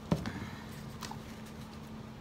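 A sharp knock just after the start, then a lighter tap about a second later, from paint things and the canvas being handled on the work table. A faint steady hum runs underneath.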